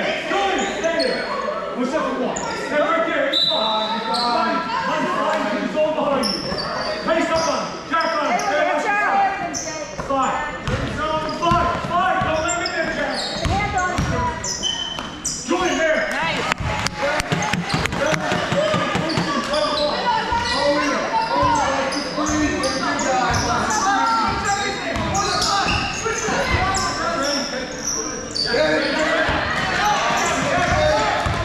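Basketball bouncing and being dribbled on a gym's hardwood floor, mixed with the shouts of players and spectators, all echoing in a large hall.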